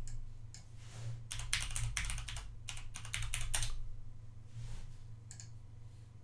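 Typing on a computer keyboard, entering a web address: a quick run of keystrokes lasting about three seconds, then a few scattered keys, over a low steady hum.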